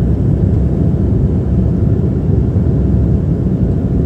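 Airliner cabin noise in flight: a steady low roar of engines and air rushing past the fuselage, heard from a window seat over the wing.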